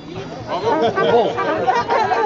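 Several people chatting, voices talking over one another, in a pause between brass band tunes.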